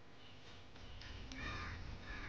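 Faint cawing of a crow, one harsh call about a second and a half in, over a low steady outdoor background rumble.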